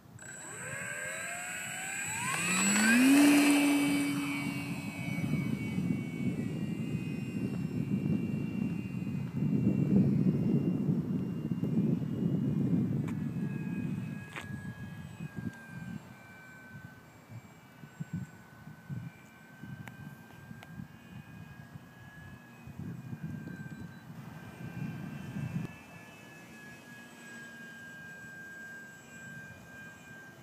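Parkzone F4U-1A Corsair RC plane's electric motor and propeller spooling up with a sharply rising whine about two seconds in. The plane then flies overhead, its motor and propeller buzz swelling again and then growing fainter and uneven as it climbs away.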